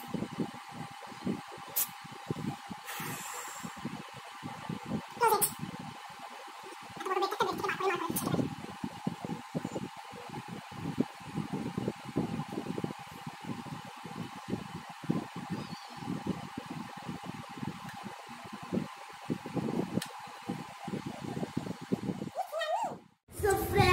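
Steady background hum with a fluttering low rumble, broken by a few sharp clicks and a brief voice about seven to eight seconds in.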